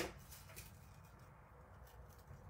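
Near silence: faint room hum with a few faint small ticks.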